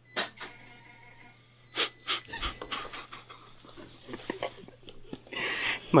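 Paper banknotes being counted by hand: a run of short, irregular rustles and flicks, with a longer rustle near the end, over a steady low hum.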